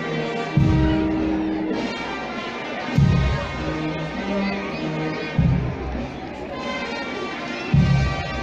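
A band playing slow music: long held notes over a bass drum struck about every two and a half seconds, with crowd voices underneath.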